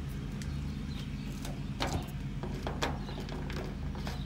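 Folding pocket knives being handled and set down on a diamond-plate metal sheet: a few light clicks and knocks, the sharpest about two seconds in, over a low steady hum.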